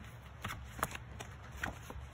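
Pages of a paperback children's book being opened and flipped by hand: about five short papery flicks and rustles.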